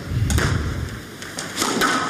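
Squash hall ambience with a low, dull thump in the first second and a few faint knocks.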